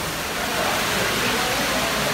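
Steady rushing of water, an even wash of noise with no breaks.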